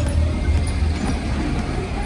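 Engine of a small soft-top 4x4 jeep driving slowly up close, a steady low rumble.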